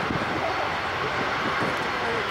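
Saab JAS 39C Gripen's single Volvo RM12 turbofan running at low power as the jet taxis on the runway: a steady jet rush.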